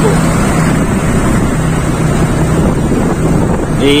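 Steady engine hum and rushing wind noise on the microphone from a vehicle travelling along a road, with no sudden events.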